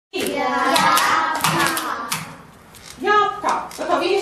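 A group of young children's voices together with hand claps. The sound dips briefly past the middle, then one child's voice rises clearly about three seconds in.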